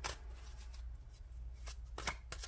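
Tarot cards being shuffled and handled, heard as a few soft card clicks over a low steady hum.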